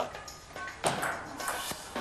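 Two table tennis ball knocks: a sharp one about a second in and a lighter one near the end.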